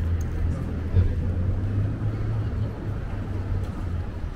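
Outdoor city ambience: a steady low rumble of distant traffic, with a single thump about a second in.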